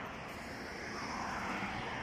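Road traffic on a multi-lane road: a steady rush of car tyres and engines, swelling a little toward the end as a car drives past.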